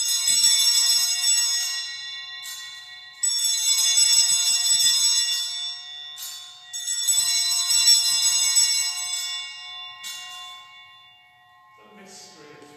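Cluster of sanctus (altar) bells rung in three long shakes, each followed by a brief jingle and each fading away, marking the elevation at the consecration of the Mass.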